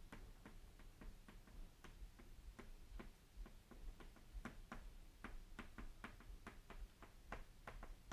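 Chalk on a blackboard while numbers and brackets are written: a faint, irregular run of short sharp ticks as the chalk strikes and lifts off the board.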